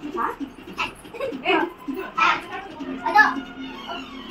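Young children's voices and short snatches of talk as they play, in short broken bursts.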